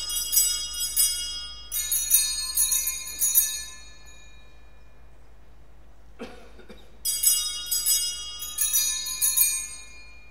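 Altar bells (Sanctus bells) shaken in jangling bursts of high ringing tones, marking the elevation of the host at the consecration: ringing for about the first four seconds, a pause, then another round from about seven seconds in.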